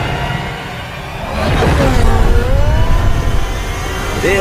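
Cinematic sci-fi vehicle sound effects over a low rumble: a whoosh about a second and a half in, then a gliding electronic engine whine that rises and falls in pitch.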